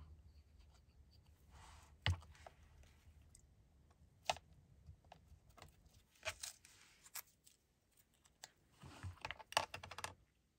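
Faint handling of small paper scraps and a glue bottle on a cutting mat: scattered light clicks and taps with brief paper rustles, the loudest clicks about two seconds in, around four seconds in and near the end.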